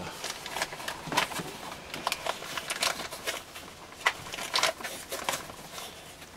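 Handling of a bag-in-box wine carton: cardboard rustling and scattered small clicks and knocks from its plastic tap as it is worked into its slot in the box.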